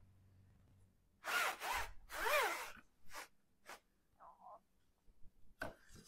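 A few short rasping rubs from a wooden sliding pizza peel handled over a floured countertop, followed by a couple of light ticks.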